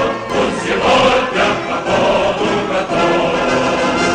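Music: a choir singing with instrumental accompaniment.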